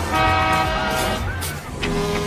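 A loud, steady horn-like blast lasting about a second, followed by a short rise and fall in pitch and a lower held tone near the end.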